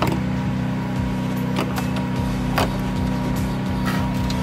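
Background music with steady sustained tones, with a few sharp clicks of hoses and fittings being handled under the hood, about one a second in the second half.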